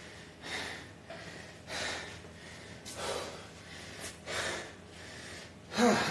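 A man breathing hard, huffing and puffing, in about four heavy breaths a little over a second apart: recovering from an all-out workout of dumbbell squats and burpees.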